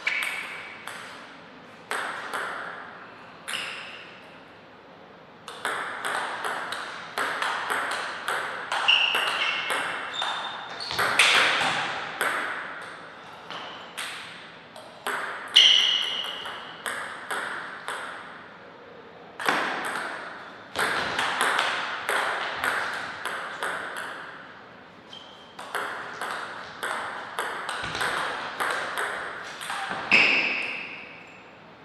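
Table tennis ball being played in rallies: quick sharp clicks of the celluloid ball off the rackets and the table, in runs of several hits with pauses between points.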